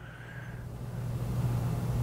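A low, steady background hum that grows gradually louder.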